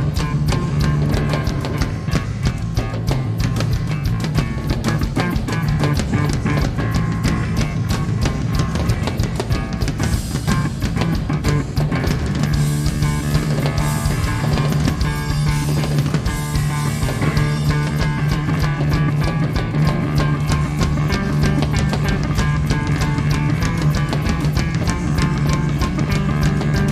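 Live heavy metal band playing an instrumental passage: a fast, steady beat on a full drum kit with cymbals, under a strong electric bass line and electric guitar. The cymbals wash louder around the middle.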